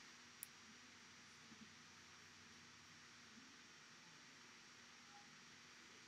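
Near silence: faint steady room hiss, with one brief high click about half a second in.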